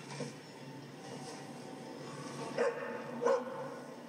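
Dog barking twice, two short barks less than a second apart in the second half.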